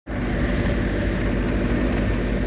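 An engine running steadily with an even, unchanging hum.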